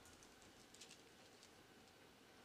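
Near silence with a few faint taps of chalk on a blackboard as a word is written, bunched near the middle.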